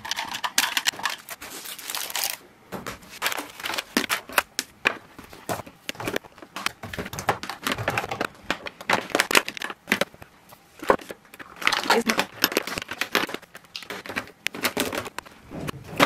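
Small hair clips being handled and dropped into a clear plastic drawer organiser: irregular clicks and clatters, mixed with crinkling of packaging.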